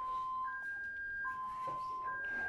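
Electronic alarm of two alternating steady tones, a lower and a higher one, each held for under a second and repeating, from equipment in a hospital ward.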